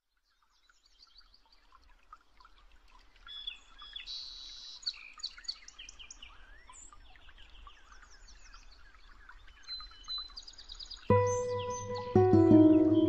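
Many birds chirping and singing over one another, fading in from silence over the first couple of seconds. About eleven seconds in, a held music chord with deep bass starts suddenly.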